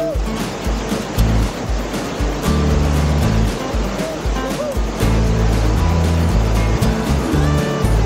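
Background music with a stepping bass line, laid over the steady rush of whitewater rapids.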